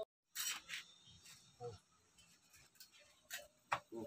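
A few short, faint scrapes and clicks from hands-on upholstery work on a fabric-covered sofa, its cover being pulled back and cut; the sharpest comes near the end.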